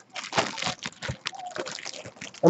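Clear plastic bag crinkling in a run of irregular crackles as the football jersey inside it is handled.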